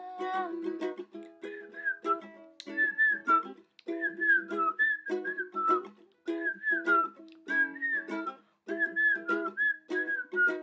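A woman whistling a melody in short phrases of sliding notes over her own strummed ukulele chords.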